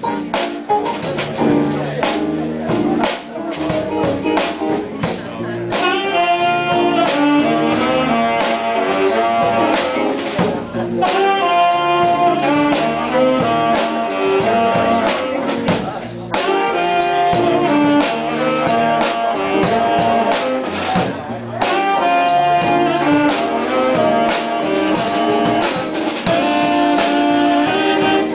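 Live jazz combo with upright bass and drum kit keeping time, joined about six seconds in by a saxophone section, baritone among them, playing the melody together in harmony in short phrases.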